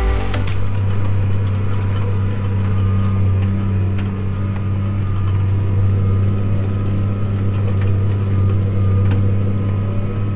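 Tractor engine running steadily under load while pulling a disk harrow, heard from inside the cab as a low, even drone. Background music cuts off about half a second in.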